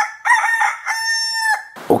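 A rooster crowing once: a cock-a-doodle-doo with short opening notes and a long held final note that cuts off cleanly. It is the dawn call that signals daybreak.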